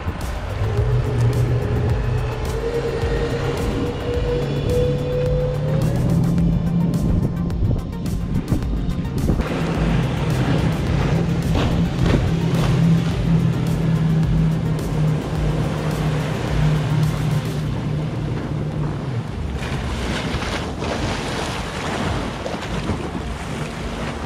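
Outboard motor of an Axopar cabin boat running at speed, its note rising over the first few seconds as it accelerates and then holding steady, with water rushing and wind on the microphone.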